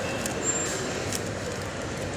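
Steady background hubbub of an indoor shopping mall: an even, noisy hum with a couple of faint clicks and no voice standing out.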